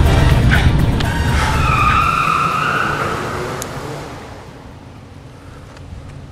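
A car engine running, then a brief tire squeal about a second and a half in, the sound fading away as the car pulls off.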